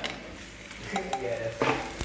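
Noodles being stirred in a wok with a metal spatula over a gas flame, with a faint sizzle and a few light clinks of the spatula against the pan about a second in and again near the end.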